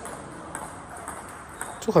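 Table tennis ball tapping lightly off the bats and table in a short, low rally: two faint sharp ticks about a second apart.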